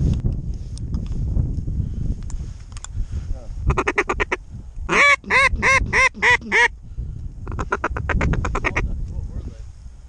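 Duck quacks: a fast chatter, then a run of six loud quacks, then another fast chatter.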